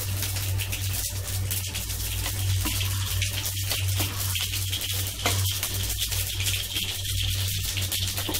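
A thick vegetable stew simmering in a large aluminium pot on a gas burner, giving a dense crackling hiss over a steady low hum, with a metal ladle stirring through it.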